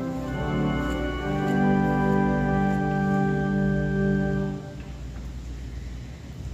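Organ playing slow, sustained chords, which stop about three-quarters of the way through, leaving low room noise.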